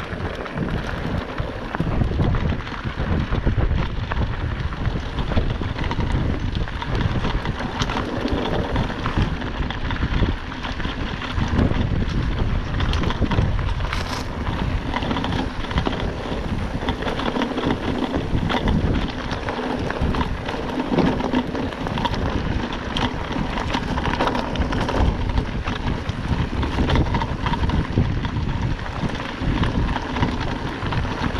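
Wind buffeting the microphone while a mountain bike rolls over a rocky dirt trail, its tyres crunching on loose stones and the frame rattling over bumps, with constant small knocks throughout.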